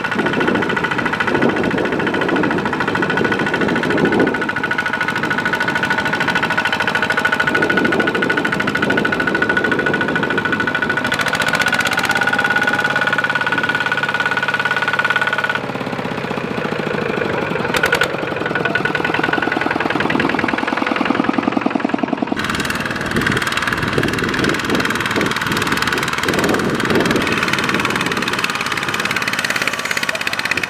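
Single-cylinder diesel engine of a two-wheel walking tractor running under load as it hauls a loaded trailer through deep mud, with two abrupt changes in the sound where the shots cut.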